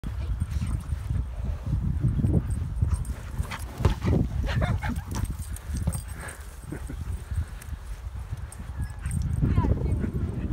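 An American Pit Bull Terrier puppy tussling with a large rubber ball on grass: scuffling and knocks from the ball, with the puppy's grunting and a short rising whine near the end, over a steady low rumble.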